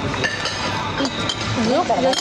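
Metal spoon clinking a few times against a ceramic plate while eating, over restaurant background chatter.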